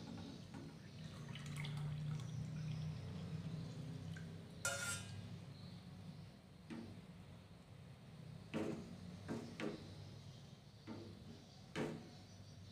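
Thick milky agar-agar mixture trickling and dripping from a tilted saucepan into a plastic container, while a spoon scrapes the pan. The spoon gives several short sharp taps against the stainless-steel pan.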